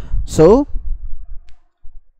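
Faint computer mouse clicks under a man's single spoken "so", over a low rumble that stops about one and a half seconds in.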